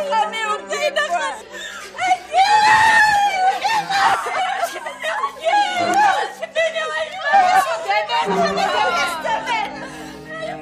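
Several women's voices crying out and calling over one another in alarm, with one long high cry about two and a half seconds in.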